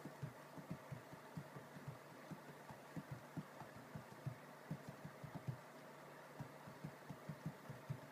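Faint, soft fingertip taps on an iPad's glass touchscreen while typing on the on-screen keyboard: several dull taps a second in irregular runs with short pauses between words.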